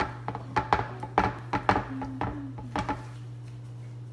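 Fingers patting and pressing dough flat in a nonstick frying pan on a stone counter: a run of about ten quick, sharp taps over the first three seconds, over a steady low hum.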